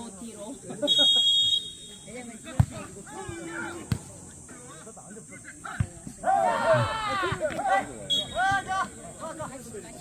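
A referee's whistle is blown once about a second in, followed by three sharp thuds as the jokgu ball is kicked back and forth in a rally, with players shouting. A short second whistle near the end marks the end of the rally.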